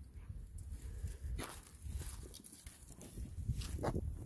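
Faint footsteps of a person walking over leaf litter and stone, with a few soft steps standing out over a low rumble.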